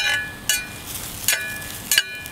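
Slotted metal spatula knocking and scraping against a cast iron skillet while stirring eggs: about four sharp clinks, each with a brief metallic ring.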